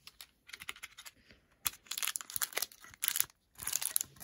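Foil Pokémon booster pack wrapper crinkling and being torn open by hand: a few faint crackles at first, then several loud bursts of crinkling from a little before halfway in.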